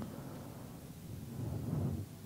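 Faint room noise: a low, even rumble and hiss with no distinct event, rising slightly near the end.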